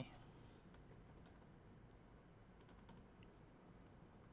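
Faint computer keyboard typing: a few light key clicks in small clusters, around a second in and again near three seconds, over quiet room tone.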